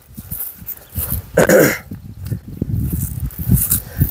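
A single short animal call about one and a half seconds in, over a low rumble of wind on the microphone.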